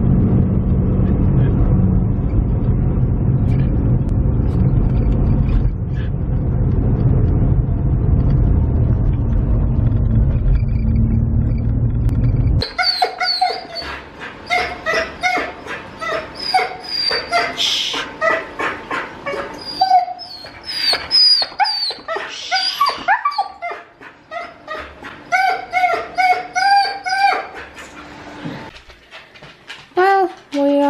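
Car cabin noise, a steady low rumble, that cuts off about twelve seconds in. Then a husky whining over and over in short high whimpers that rise and fall, with a few louder yips.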